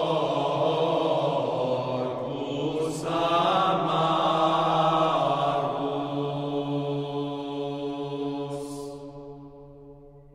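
Vocal ensemble singing chant in long held notes over a steady low drone, fading out over the last few seconds.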